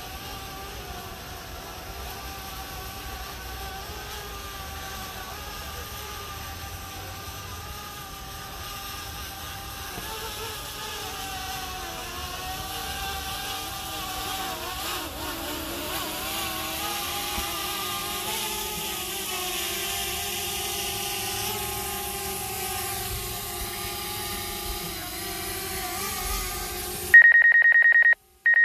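Quadcopter camera drone's propellers whining, several steady tones that shift in pitch and grow louder as it comes down. Near the end the sound cuts abruptly to a loud, pulsing electronic ringing tone.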